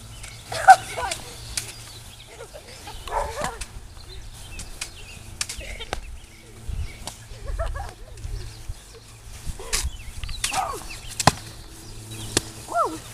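Foam pool noodles swishing and slapping against each other and against bodies in a mock sword fight: scattered short smacks, with children's brief shouts between them.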